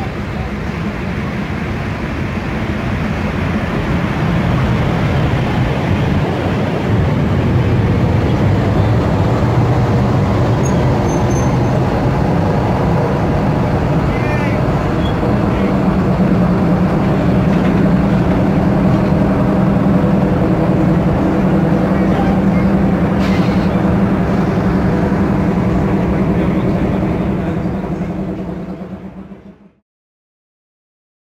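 EP05 electric locomotive running into the station alongside the platform with its train: a steady mechanical hum and wheel noise that grows louder over the first few seconds as it comes close, with a low steady tone setting in about halfway and a brief squeal in the middle. The sound fades out near the end.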